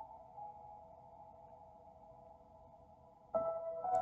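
Soft background music of steady held tones, fading quieter, then swelling louder again shortly before the end.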